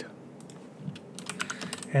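Computer keyboard typing: a quick run of keystrokes in the second half.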